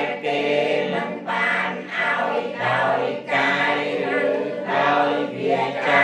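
Several voices singing together in a melodic, choir-like chant, in phrases of about a second each.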